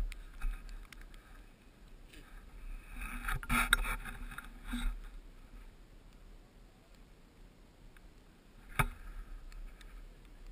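Faint rustling and handling noise from a handheld camera moving outdoors in snow, with a burst of scuffing in the middle and one sharp knock near the end.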